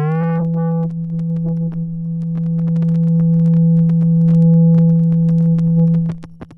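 A software modular synthesizer tone, a Basal oscillator waveshaped through a ZZC FN-3 in VCV Rack, holding one low note after a slight upward bend in pitch at the start; its bright upper overtones die away within the first second, leaving a steady, mellower tone. Faint crackly static ticks run under it.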